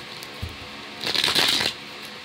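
A deck of cards shuffled by hand: a short burst of rapid riffling clicks about a second in, over faint background music.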